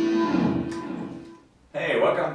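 Electric guitar ending a phrase on a long held note that dies away over about a second and a half, then cuts off abruptly.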